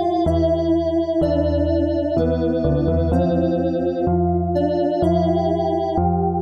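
Winter synth / dungeon synth instrumental: sustained synthesizer chords over a held low bass, the chord changing about once a second.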